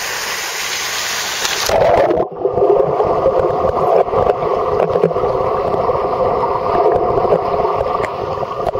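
Water noise picked up by a waterproof camera, which goes under water about two seconds in: the bright hiss cuts off and the sound turns muffled, a dull rushing noise with faint clicks.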